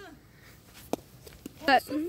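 A single sharp plastic crack about a second in: a hollow plastic wiffle ball bat hitting a wiffle ball on a swing at a pitch.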